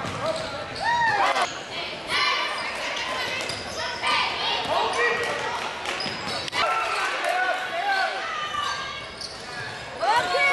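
Basketball game sound in a gymnasium: a ball bouncing on the hardwood court and sharp knocks, under scattered calls and shouts from players and spectators.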